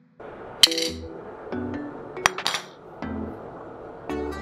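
A steel diamond disc clinking against marble mosaic tiles, three sharp metallic clinks over background electronic music.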